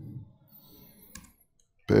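Quiet room tone with one short, faint click from the laptop about a second in, as text is copied and pasted in the editor. A man's voice starts near the end.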